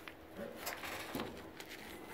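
Faint clicks and handling noise as a car door is swung up open.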